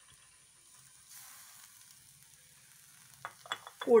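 Faint sizzling of a jackfruit-rind and bean stir-fry frying in an aluminium pan on a gas burner, slightly louder from about a second in. A few light clicks come near the end.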